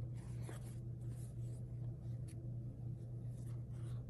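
Fingers rubbing and sliding on a rigid cardboard box as it is handled and turned over: a few faint scratchy rustles and a small tick about two seconds in, over a steady low hum.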